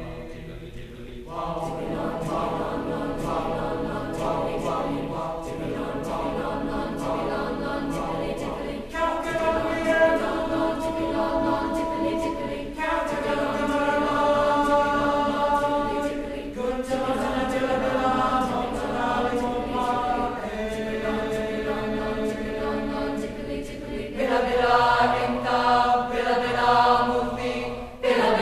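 Mixed-voice school choir singing sustained chords in long phrases, with no instruments in view. The sound swells louder in the middle and again near the end.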